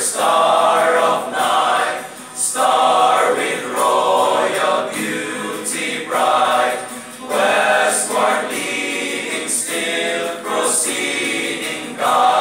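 A group of male voices singing a Christmas carol together as a choir, in phrases of a second or two with short breaths between them.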